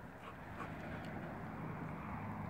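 Another dog barking faintly in the distance.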